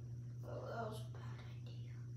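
A brief soft whisper or murmur of a person's voice about half a second in, over a steady low hum.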